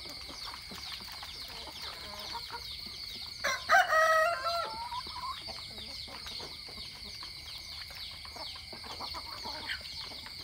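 A rooster crows once near the middle, a single call about a second and a half long, over a steady high-pitched background drone.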